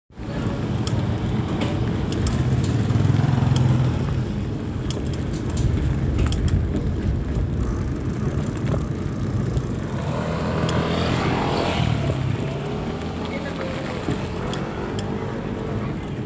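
Street traffic heard from a moving bicycle: the hum of motorcycle and tricycle engines swells and fades as they pass, loudest about three seconds in and again near eleven seconds. Scattered sharp clicks and knocks run through it.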